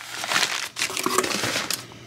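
Sheets of newspaper packing being crumpled and pulled out of a styrofoam shipping box, an irregular crackling rustle.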